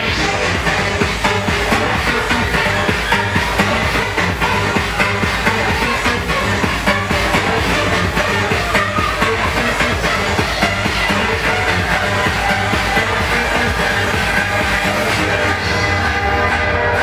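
Electronic dance music played loud through a club sound system from a DJ's decks, a dense, continuous mix with a steady pulsing beat.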